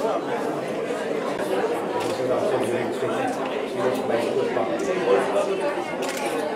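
Several people's voices talking over one another in a crowded room, a steady chatter with no single voice standing out.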